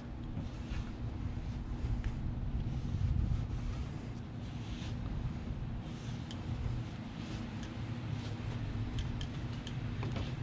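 Damp microfiber cloth wiping along a car door's belt-line weatherstrip channel: faint, irregular rustling and rubbing over a steady low background hum.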